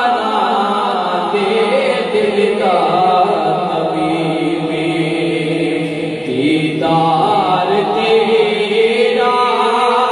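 A solo male voice singing a Punjabi naat, a devotional poem in praise of the Prophet, unaccompanied into a handheld microphone. He sings in long, wavering held notes with short breaks for breath.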